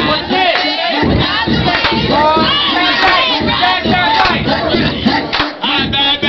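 A crowd of young people shouting and cheering around a dancer, many excited voices overlapping at once, loud throughout.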